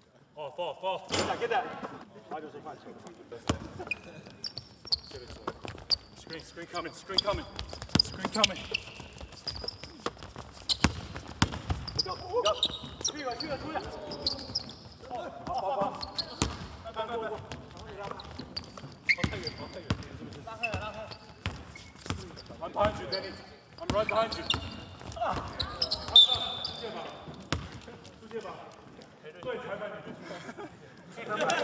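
A basketball bouncing on a wooden court in a large indoor arena, with sharp thuds scattered through the play, mixed with shouts and chatter from players and spectators.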